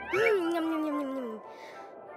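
A cartoon character's voice giving one long wordless sound that rises briefly, then slides slowly down in pitch for over a second. Faint background music under it.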